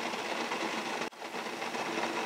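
Steady rumbling hiss of water boiling under an open stainless-steel tiered steamer, with a brief dip about a second in.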